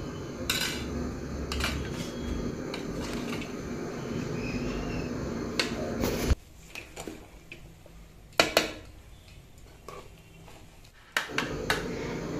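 Metal spoon scraping and clinking against a metal cooking pot while rice is turned and mixed, with scattered knocks of the spoon on the pot. The sound drops abruptly about six seconds in, leaving a few sharp knocks.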